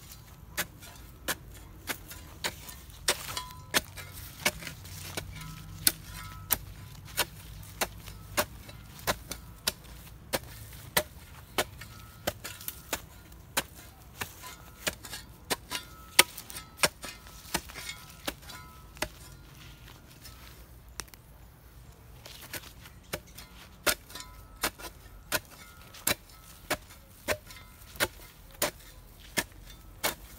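Steel shovel blade chopping into soil, about two sharp strikes a second, as it cuts a shallow trench around a young plant. The strikes stop for a few seconds about two-thirds of the way through, then start again.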